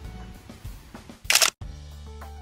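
Background music with a steady beat, broken about a second and a half in by a short, loud camera-shutter sound effect and a brief gap, after which the music carries on.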